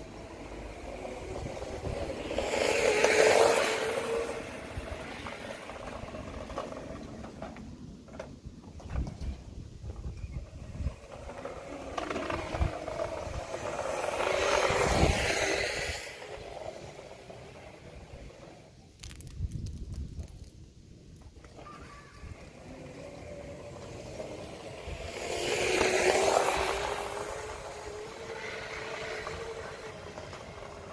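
Razor E90 electric scooter riding past three times, its motor whine and tyre noise rising and falling with each pass.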